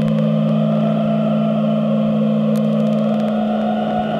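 Electronic synthesizer drone: two steady low tones held under a hissing, noisy band that slowly rises in pitch as a knob on the synth is turned.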